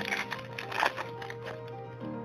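Foil wrapper of a Magic: The Gathering booster pack crinkling as it is torn open and the cards are pulled out, with the sharpest crackle a little under a second in. Steady background music plays underneath.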